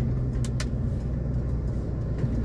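Car engine running steadily, heard from inside the cabin, with a couple of short clicks about half a second in.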